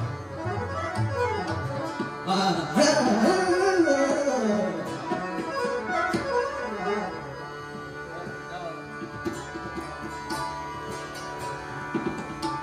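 Hindustani classical music in Raag Yaman: fast rising and falling melodic runs from the voice and harmonium over tabla and a steady tanpura drone. About seven seconds in the runs die away, leaving a quieter stretch of tabla strokes over the drone.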